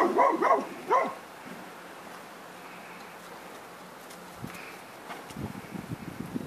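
A dog barking about four times in quick succession, then falling quiet. A few soft low thuds follow near the end.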